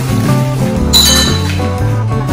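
A single bright clink about a second in, with a short ringing tail, as M&M candies are poured from a bag into a white bowl, over background music.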